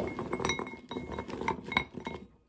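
Wrapped candies and a small object being rummaged by hand in a glazed bowl, clinking against it in a quick irregular string of taps, some with a brief ring.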